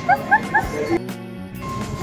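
Background music, with four short high rising yelps in quick succession in the first half-second, then a brief lull in the music just past the middle.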